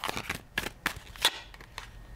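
A deck of oracle cards being shuffled in the hands, the cards slapping against each other in a run of irregular crisp flicks, the loudest a little past a second in.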